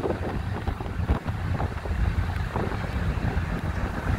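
Wind buffeting the phone's microphone on a ferry's open car deck, over a steady low rumble of the ferry underway.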